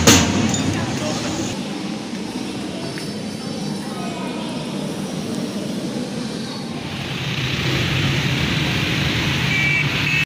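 Music breaks off at the start, leaving the steady background noise of a metro station hall with indistinct voices and a few faint high beeps. A louder hiss comes in about seven seconds in.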